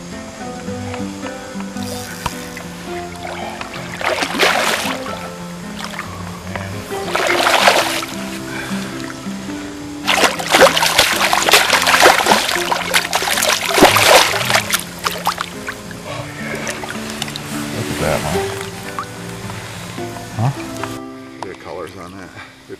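A hooked brown trout thrashing and splashing at the water's surface in several bursts, the longest and loudest from about ten to fifteen seconds in, over steady background music.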